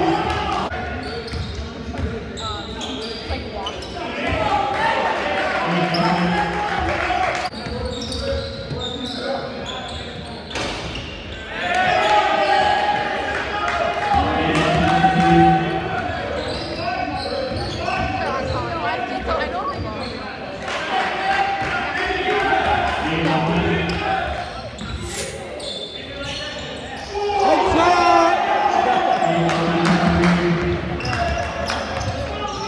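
Basketball game sounds in a gym: a ball bouncing on the hardwood court amid players' and spectators' voices.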